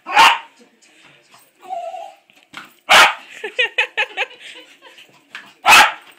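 A small dog barking in sharp single barks, three loud ones spread across a few seconds, with softer yips between them, as it jumps at a balloon.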